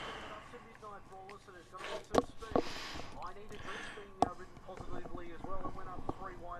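Faint voices talking in the background, with a few sharp knocks, around two seconds in and again at about four seconds.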